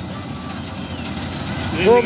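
Malkit 997 combine harvester running steadily as it cuts wheat, a continuous low machine noise without distinct beats, with a voice coming in near the end.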